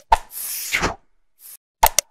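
Animated subscribe-button sound effects: a sharp click, then a swish lasting about a second, and two quick clicks near the end.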